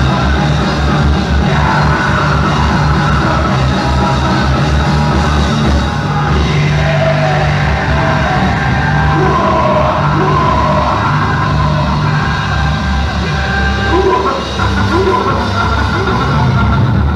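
A live rock band playing loudly, with electric guitars, bass and drums under a male singer's voice.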